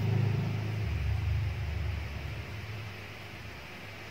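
A low steady rumble that fades about two seconds in, leaving a faint hiss.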